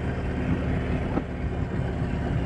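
Harley-Davidson touring motorcycle's V-twin engine running steadily while cruising at a gentle pace, heard from the bike itself.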